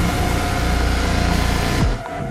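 Trailer sound-design drone under a title card: a deep, steady rumble with a thin held high tone on top, cutting off sharply just before the end.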